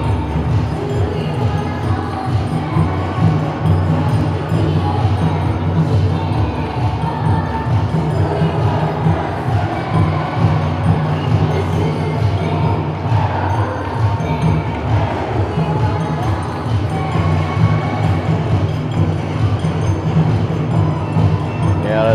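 Bon odori festival music playing under the chatter of a large, dense crowd.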